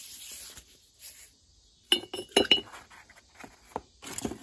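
Brush scrubbing liquid inside the bore of a cast vise body, then, about two seconds in, a quick run of sharp ringing clinks of a hard object, followed by a few lighter ticks.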